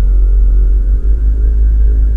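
Loud, steady low rumble in the cabin of a Volkswagen car rolling slowly in neutral.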